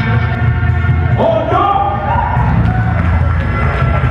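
Music playing with a steady deep bass, with crowd noise and cheering; a voice shouts briefly about a second in.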